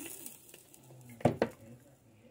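Electric sandwich grill's lid and plastic handle clacking shut, two sharp clicks about a second in, with a faint sizzle of the food cooking inside.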